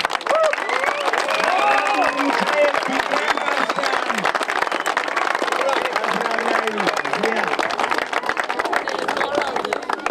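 A crowd applauding, clapping steadily, with scattered voices among the clapping.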